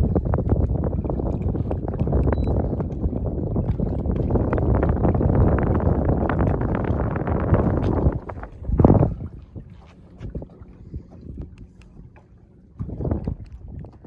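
Wind buffeting the microphone, a loud, heavy rumble for the first eight seconds, then a short gust just before the nine-second mark, a quieter stretch, and another gust near the end.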